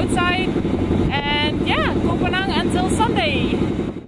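Passenger boat's engine running with a loud, steady drone, with a woman talking over it. It cuts off abruptly at the end.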